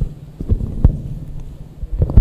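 Irregular low thumps over a steady low hum; the strongest thump comes a little under a second in.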